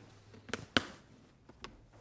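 A few soft clicks and light rustles of things being handled inside an open leather case as a cardboard box of pencils is lifted out, the clearest about half a second in and just under a second in.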